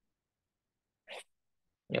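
Near silence with one short breath drawn by the speaker a little after a second in.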